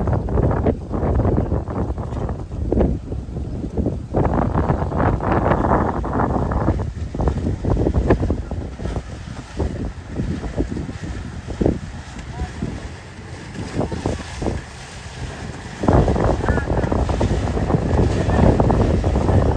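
Gusty wind buffeting the microphone as a motorboat runs close past on choppy water. The buffeting eases for a few seconds about two-thirds of the way through, then returns loud.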